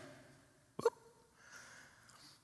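A faint pause in a man's speech: a short, sudden mouth sound about a second in, then a soft intake of breath near the end.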